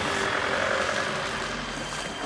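Motorbike engines running as the bikes ride through floodwater, with a steady wash of water noise.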